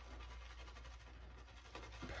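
Faint scratching of a shaving brush being worked in soap lather in a shaving bowl.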